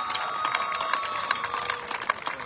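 Graduation audience clapping and cheering for a graduate whose name has just been called. One long, steady, high-pitched note sounds over the clapping and fades out near the end.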